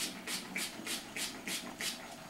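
Spray bottle of heat-defiant smoother and detangler spritzing a synthetic wig: quick repeated sprays, about three to four a second.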